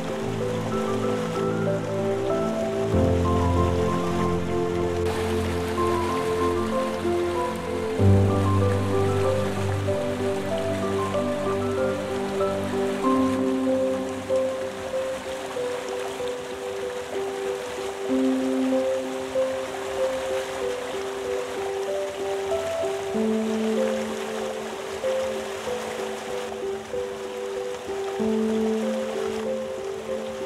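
Slow piano music in long held chords that change every few seconds, laid over the steady rush of a waterfall.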